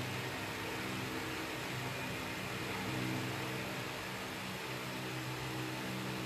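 Steady background hum with a constant hiss, and no distinct events.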